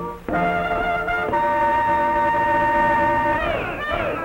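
A brass horn sounds a short fanfare of a few held notes, the last one sustained for about two seconds. Near the end a cartoon voice starts calling out with wavering pitch.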